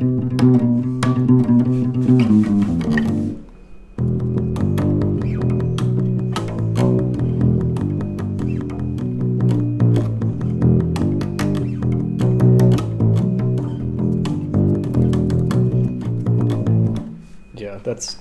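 Bass guitar played solo: a short riff from a song, a brief break about three seconds in, then a longer run of plucked notes that stops about a second before the end. The player is not quite sure of the song's pace.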